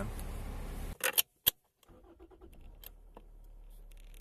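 Steady low rumble of a car cabin on the move, cut off suddenly about a second in. Then a few sharp clicks and keys jangling at a Toyota's ignition lock, with small ticks over a faint low hum.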